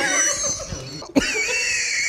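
A person's long, high-pitched squeal that slowly falls in pitch, from straining to bite into a rock-hard chocolate-coated bar. It comes after a sharp click about a second in.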